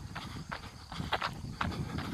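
Footsteps on a dirt road, about two a second, heard from a handheld camera carried by the person moving.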